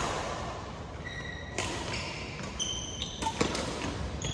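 Badminton rally: sharp cracks of rackets striking the shuttlecock, a second and a half or so apart, each followed by a short echo in a large hall. Brief high squeaks of shoes on the court floor come between the hits.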